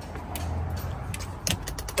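Light mechanical clicks and rattles over a low steady hum; the sharpest click comes about one and a half seconds in, followed by a quick run of smaller clicks.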